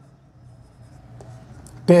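Marker pen writing on a whiteboard: faint, short strokes as a word is written. A man's voice starts right at the end.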